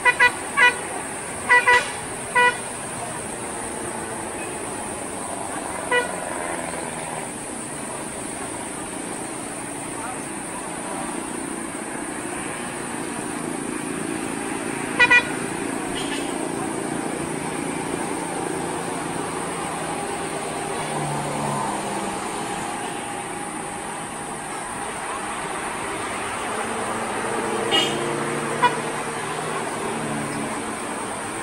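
Vehicle horns giving short toots: a quick run of about five in the first couple of seconds, then single or paired toots every so often, over steady traffic noise.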